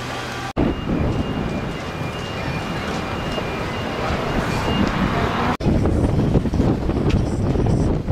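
Wind buffeting the microphone over a low outdoor rumble. It cuts off abruptly twice, about half a second in and again past the middle.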